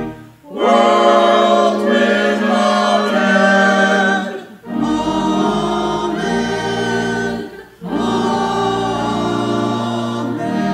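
Group of voices singing a slow hymn together in long held phrases, with short breaks for breath between the lines.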